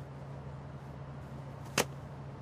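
A single short, sharp click near the end, over a steady low hum.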